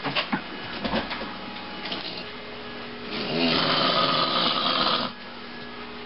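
A man snoring loudly: one long snore begins about three seconds in and lasts about two seconds, with a brief rattle at its start. A few light knocks come near the beginning.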